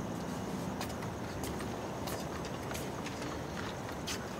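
Steady background noise with a faint low hum that fades after about a second, and a few faint clicks roughly two-thirds of a second apart.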